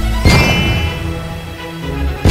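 Cartoon sound effect: a single metallic clang about a quarter second in, followed by a bell-like ringing that slowly fades.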